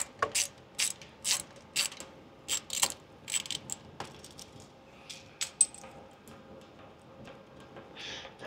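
A hand ratchet clicking in short irregular runs, denser in the first half and sparser near the end, as the two mounting screws of a CFM56-5B engine's N1 speed sensor are backed out.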